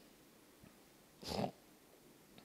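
Quiet room tone, broken a little over a second in by one short breath close to a handheld microphone.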